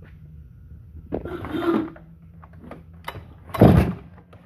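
A Stihl MS 661 two-stroke chainsaw being shifted on a steel bench, then one sharp pull of its recoil starter cord near the end, just before the engine starts.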